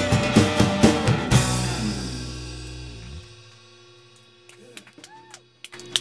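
Live rock band (guitars, bass and drum kit) playing the last bars of a song, ending on a final hit about a second and a half in; the closing chord then rings out and fades away over the next two seconds.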